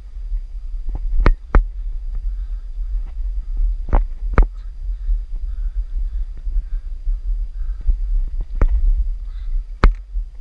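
Wind rumbling on the camera microphone, a constant low buffeting, with about six sharp knocks scattered through it, the loudest near the end.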